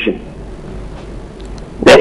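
A man speaking over a telephone line pauses mid-answer, leaving only faint steady line hiss and hum, then starts speaking again with a sharp loud onset near the end.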